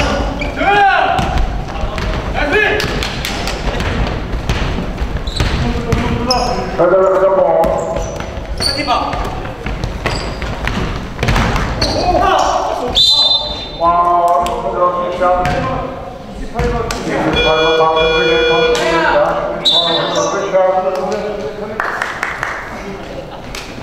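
A basketball bouncing on a hardwood gym floor during live play, with players' voices calling out, all echoing in a large hall.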